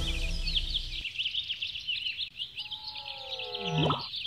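Birds chirping in a steady, busy chorus as background music fades out about a second in. Near the end a pitched sound glides down, then sweeps sharply up.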